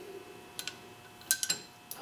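Gorton 8½D milling machine's Y-axis handwheel rocked back and forth, giving a few light metallic clicks as the slack is taken up each way: quite a bit of backlash from a worn Y-axis Acme leadscrew.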